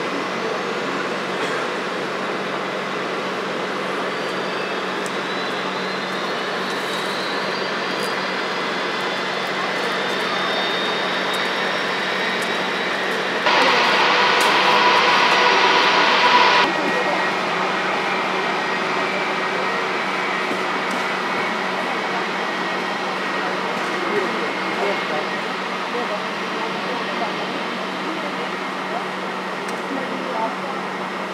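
Jet airliner engines running at taxi power: a steady hum under a faint high whine that rises slowly over several seconds. A louder stretch of about three seconds in the middle starts and stops abruptly.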